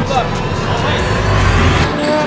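Loud arcade din: a mix of game-machine noise and music, with a low rumble that builds about a second in and cuts off just before the end.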